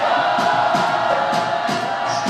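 Live soca music played loud through a concert sound system with a steady beat and long held notes, the crowd singing and chanting along.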